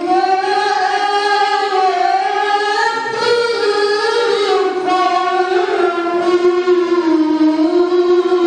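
A young man's solo voice chanting melismatically into a microphone, holding long notes that slowly bend up and down in pitch.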